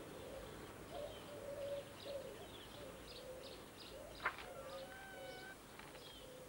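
Garden birdsong: a pigeon cooing over and over with small birds chirping, faint. A single sharp click comes a little past four seconds in.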